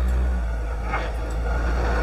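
A steady low mechanical rumble and hum, easing slightly after the first half second, with a brief rustle about a second in.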